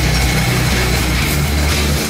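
Loud hard rock background music with distorted guitar and drums, running steadily.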